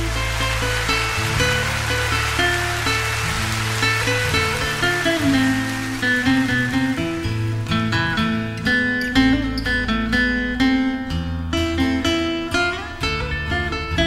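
Instrumental break in a Japanese enka song, with the vocal resting: a steady bass line under plucked guitar notes and a melodic line that grows busier about halfway through.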